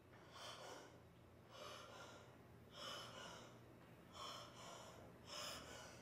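A man breathing hard, faint and heavy, about one breath a second, as he strains doubled over in pain from an upset stomach.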